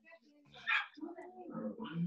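A dog barks once in the background, a short sharp bark a little past a third of the way in, followed by voices.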